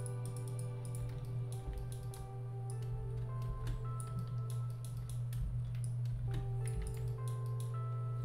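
Soft background music of held notes over a steady low drone, with scattered clicks of a computer keyboard and mouse.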